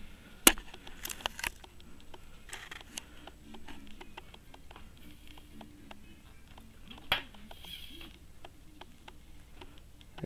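Handling noise from a handheld camera: scattered sharp clicks and light rustles, the loudest a single click about half a second in, over a faint low room hum.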